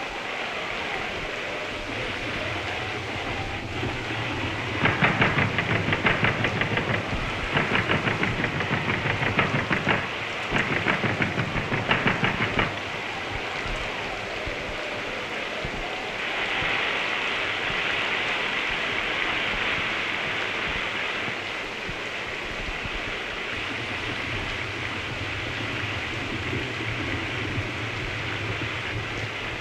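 Steady heavy rain, falling harder for several seconds past the midpoint. Earlier, about five seconds in, three loud bursts of fast, regular rattling break in over the rain over the next seven or eight seconds.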